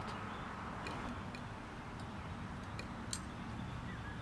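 Quiet background noise with a handful of faint, irregular light clicks, typical of small tools or an oil can being handled; the drill press is not yet running.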